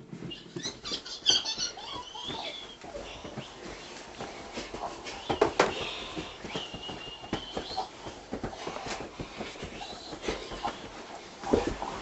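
Two people scuffling in a play fight: scattered bumps, thuds and rustling, with a couple of short high squeals and a louder bump near the end.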